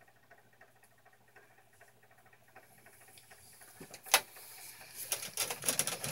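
Near silence with a faint low hum, then about four seconds in a sharp click, followed by a run of small clicks and knocks as eggs and the plastic incubator tray are handled during candling.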